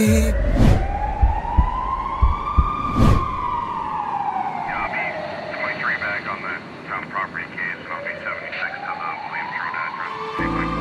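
A siren wailing in one slow rise and fall: it climbs for about three seconds, sinks for about five, and starts to climb again near the end. A few knocks sound near the start, and faint voices in the middle.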